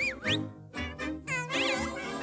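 Orchestral cartoon score with high, squeaky animated-animal cries over it: a short cry that swoops up and down just after the start, and a longer wavering one about one and a half seconds in.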